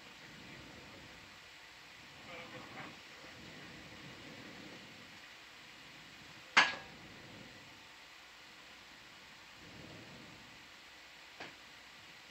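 Steady low hiss with faint murmured voices, broken by one sharp, loud click about halfway through and a smaller click near the end.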